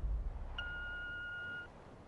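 The tail of a deep boom fades out, then about half a second in a single steady electronic beep sounds for about a second: a telephone answering-machine tone marking the start of a recorded message.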